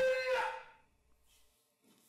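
A man's voice letting out a held, pitched shout or drawn-out syllable that dies away within the first second, followed by near silence with a faint soft sound near the end.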